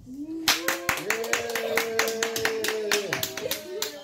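A small group clapping, quick and uneven, starting about half a second in and tailing off near the end, over a steady sustained pitched sound.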